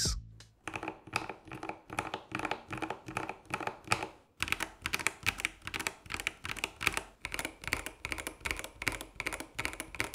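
Typing on Epomaker 65% mechanical keyboards, first the TH68 and then the EK68: a fast, continuous run of keystroke clacks. It breaks off briefly about four seconds in, then carries on.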